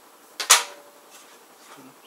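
A hard knock: two quick sharp hits about half a second in, the second much louder, followed by a short ring.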